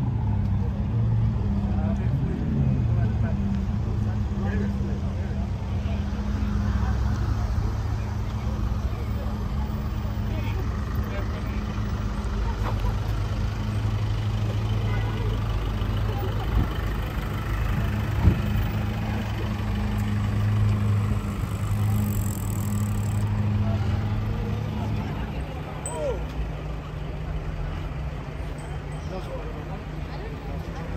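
Car engine idling with a steady low hum among surrounding voices, the hum dropping away near the end. A single sharp click sounds once, about eighteen seconds in.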